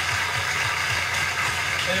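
Studio audience applauding, steady clapping with no break.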